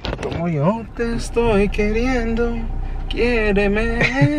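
Men's voices talking and laughing inside a car cabin, over a steady low rumble from the car.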